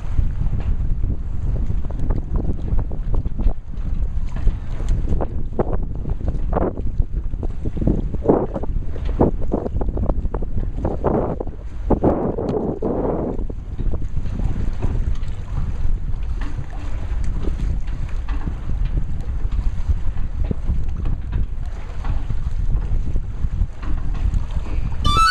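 Wind buffeting the microphone in a steady low rumble, with a run of brief irregular sounds around the middle.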